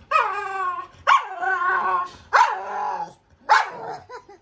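A pet dog barking four times, each bark sharp at the start and drawn out into a pitched, whining tail, the "talking" vocalizing of a dog demanding to be taken out for a walk.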